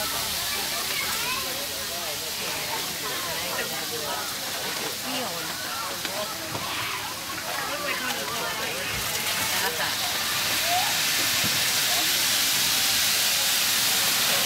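A steady hiss from an open barrel grill loaded with ribs, growing louder about ten seconds in, over the faint chatter of people nearby.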